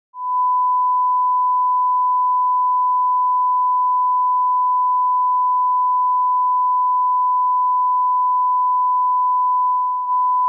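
Broadcast line-up test tone: a steady, unbroken 1 kHz sine tone played with SMPTE colour bars. It is the reference signal used to set audio levels before a programme.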